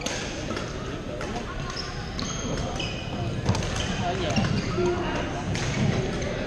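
Badminton play across several courts in a large, echoing gym: sharp racket-on-shuttlecock hits and short high sneaker squeaks on the court floor.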